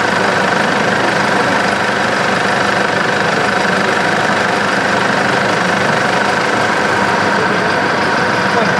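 A vehicle engine idling close by, a steady drone with no change in pitch.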